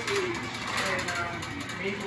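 Faint voices in the background over steady indoor store noise.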